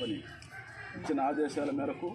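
A chicken calling in the background, with a man's voice speaking over it.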